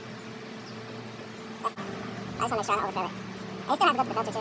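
A man's voice, a few brief untranscribed words in the second half, over a steady low hum.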